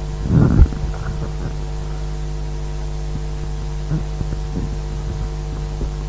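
Steady electrical mains hum from the microphone and sound system, with a brief low bump about half a second in.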